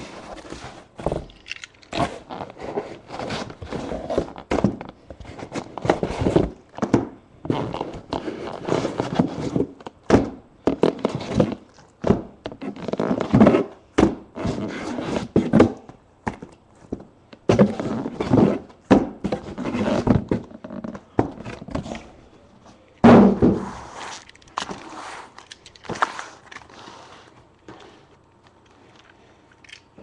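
Irregular thunks, knocks and scraping from objects being handled and set down, quieter over the last few seconds.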